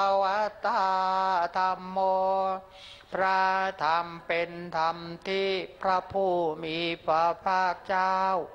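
Thai Buddhist devotional chanting: voices reciting homage verses on a near-monotone, each syllable held steady, with short breaks between phrases and the pitch dropping at some phrase ends.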